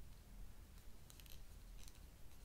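Very faint, crisp ticks from fingers handling the paper pages of a book, a short cluster about a second in and another near the end, over a low steady room hum.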